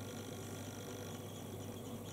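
Quiet room tone with a faint steady low hum and no distinct sound events.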